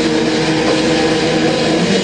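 Heavily distorted electric guitars holding a steady, sustained chord in a live metal band performance, loud and overdriven in the recording.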